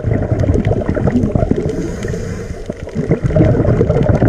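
Scuba regulator exhaust bubbles heard underwater: a loud, continuous gurgling with a low rumble and small crackles, easing a little past the middle and swelling again near the end.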